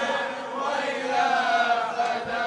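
Soft group chanting of voices in an Arabic Shia devotional song, with faint wavering sung tones under a diffuse wash of sound.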